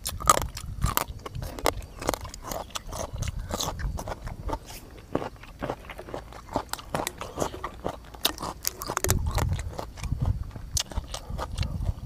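Close-miked chewing and mouth sounds of a man eating, with irregular small clicks and smacks throughout. A short stretch of low bumps comes about nine seconds in.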